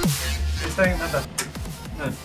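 Electronic dance music in a dubstep style, with steep falling bass sweeps repeating a little under a second apart.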